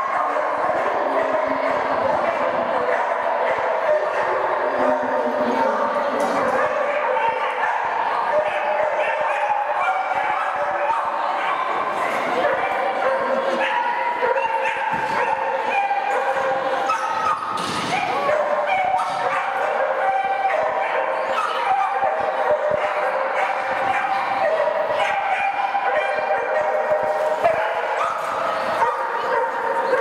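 Dogs barking again and again over a steady murmur of people's voices.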